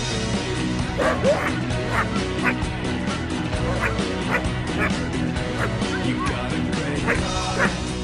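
A small dog barking repeatedly in short, sharp barks, about two a second, over background music.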